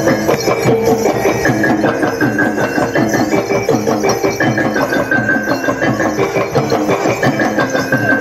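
Live ensemble of tuned mallet percussion and drums playing a fast, even beat under a short repeating melody of struck notes.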